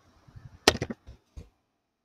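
Computer keyboard typing: a quick run of three or four sharp keystrokes, then a single keystroke about half a second later as the search is entered.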